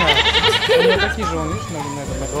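A quavering, goat-like bleat lasting about a second, over voices.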